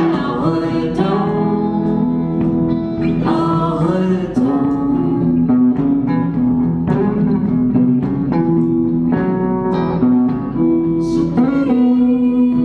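Live band playing a hill-country blues groove, led by a semi-hollow electric guitar, with a voice holding long wordless notes over it.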